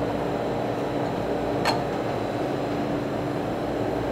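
A steady mechanical hum with one constant low tone, like a fan or refrigeration unit running, and a single sharp click a little before the middle.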